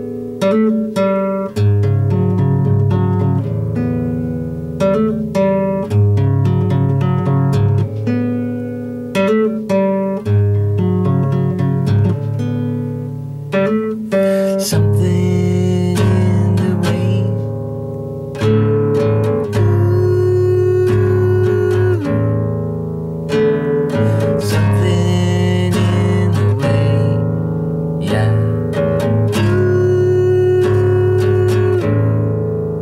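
Acoustic guitar played solo: a continuous run of plucked notes and chords with no singing over it.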